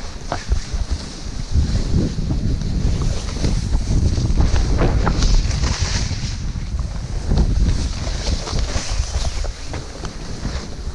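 Wind rumbling on a moving GoPro microphone during a snowboard run through powder, over the steady hiss of snowboards sliding through snow.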